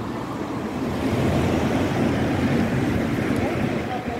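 A vehicle passing: a steady rush of road noise that swells about a second in and eases near the end.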